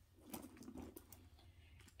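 Near silence, with a few faint clicks and light rustles of small items being handled and set down.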